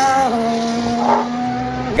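Formula One car's 1.6-litre turbocharged V6 running hard out of a corner, its pitch stepping down once about a third of a second in. A brief scraping rasp comes about a second in: the car's floor plank touching the kerb, which is the sign of a car running low.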